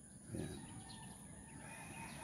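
Faint outdoor background with a steady high-pitched whine, and one brief low call about half a second in.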